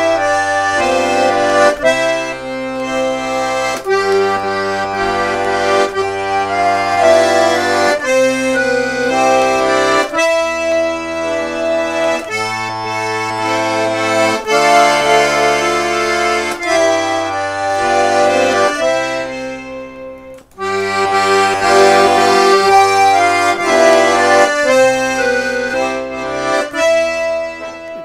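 A four-voice Tula garmon (Russian button accordion) tuned in C major plays a slow melody over left-hand bass and chord accompaniment. It shows how much of a phrase one stroke of the bellows should hold. The sound breaks off briefly about twenty seconds in.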